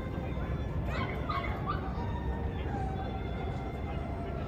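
A few short high-pitched yelps about a second in, over a steady low outdoor rumble.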